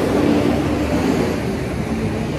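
Big truck driving past on the road: a steady rush of engine and tyre noise with a low engine hum.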